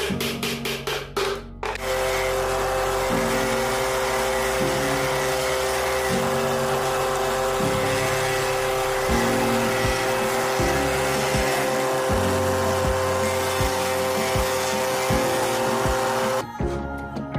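A machine-mounted disc sander running steadily with a steady hum, sanding a small wooden piece held against the spinning disc; the noise comes in abruptly about two seconds in, with background music with a beat.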